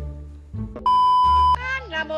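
Background music with a steady low bass line. A little under a second in, it is cut across by a loud, steady electronic bleep lasting under a second. A voice with sliding pitch follows near the end.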